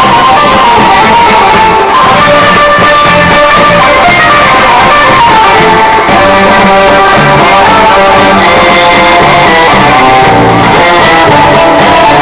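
Loud music led by a plucked string instrument playing a melody, running without a break.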